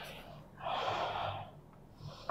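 A single audible breath, lasting about a second.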